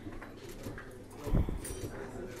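A pause in speech with faint room murmur through the PA, broken by a single short low thump on a handheld microphone about a second and a half in.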